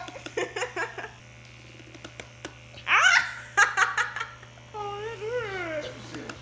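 A girl laughing in three bursts, her voice wavering, over the steady low hum of a percussive massage gun running against her face.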